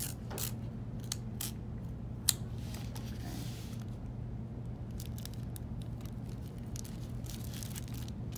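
Tape and a clear plastic book cover being handled: scattered small clicks and rustles, a sharp snap a little over two seconds in, and a short soft rip about three seconds in, over a steady low hum.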